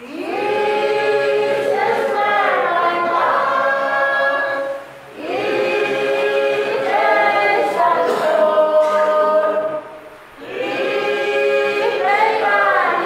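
Congregation singing a hymn together without accompaniment, in phrases of about five seconds with short breath pauses about five seconds in and again near ten seconds.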